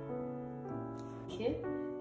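Background piano music: held chords that change twice.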